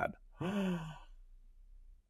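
A person gasps in reaction about half a second in: one breathy vocal sound, falling in pitch, that trails off into quiet room tone.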